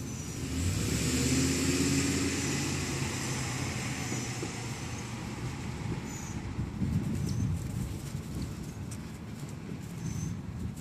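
A motor vehicle passing: engine and road noise swell up in the first second or two, then fade away over the next few seconds.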